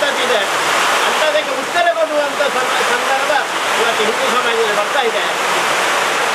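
A man speaking Kannada steadily over a loud, even hiss of background noise.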